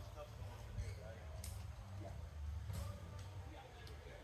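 Faint, indistinct talking from distant voices over a steady low rumble, with a couple of brief rustles.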